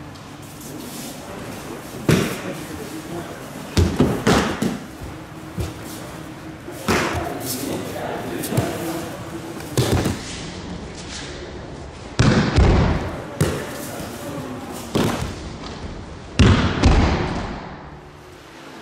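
Bodies hitting tatami mats as an aikido partner is thrown and takes breakfalls: a series of about ten heavy thuds and slaps at irregular intervals, the loudest two in the second half.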